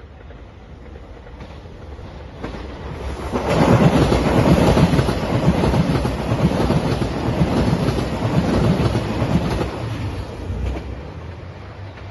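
A JR Shikoku 2700 series diesel limited express train passing close at speed. The engine and wheel noise builds from about two seconds in, stays loud through the middle, and fades away near the end.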